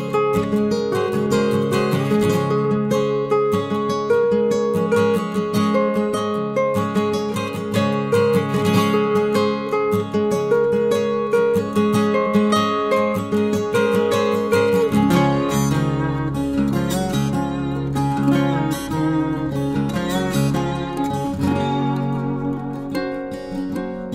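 Calm instrumental country-folk music led by plucked and strummed ukulele. A low bass comes in partway through and drops out again near the end.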